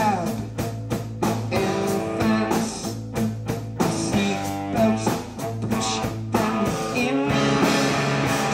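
Live rock band playing: a male singer singing into the microphone over guitar and drums keeping a steady beat.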